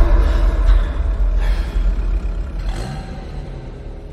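A deep, steady rumble that fades away over a few seconds.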